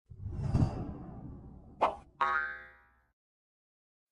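Audio logo sting for an intro: a swelling whoosh, a sharp hit just under two seconds in, then a ringing tone that fades out within about a second.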